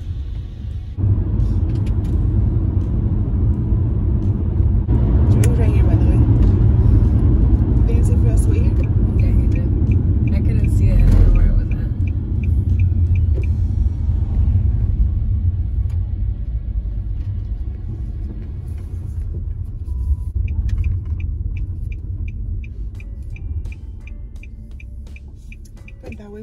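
Engine and road noise inside a V6 car's cabin as it pulls away and drives on. A heavy low rumble builds from about a second in, is strongest around the middle and then gradually eases. A turn signal ticks steadily twice, once in the middle and again near the end.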